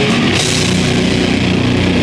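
Live heavy rock band playing loud: drum kit and guitars, with a cymbal crash about a third of a second in.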